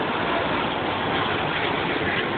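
Steady engine noise from vehicles idling in the street.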